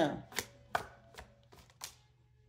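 Tarot cards being shuffled and handled: a handful of short, sharp card snaps and taps spread over about a second and a half.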